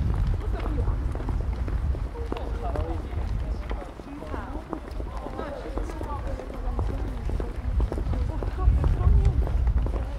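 Voices of passers-by talking close by, too indistinct to make out words, over a steady low rumble that grows louder near the end.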